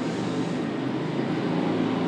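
Steady background noise with a faint low hum, level and unchanging throughout.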